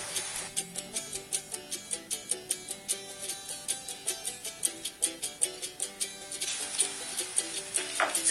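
Light background music: a tune of quick, evenly spaced plucked-string notes with a steady beat.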